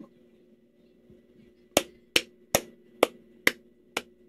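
Hands clapping: six sharp claps, a little over two a second, starting near the middle.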